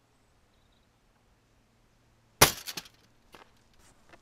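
Near silence, then one sharp impact about two and a half seconds in, with a short rattle after it: the four-pointed hammer face (coronel) of a sword-axe polearm striking a leg of lamb on a brigandine target.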